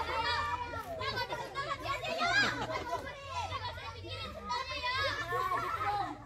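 A group of children's voices talking and calling out over one another while they play, with no one voice standing out.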